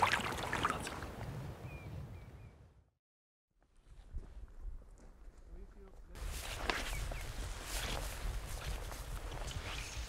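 Outdoor lakeshore background that drops out to silence for a moment about three seconds in, followed over the last four seconds by irregular footsteps on the gravel and grass shore.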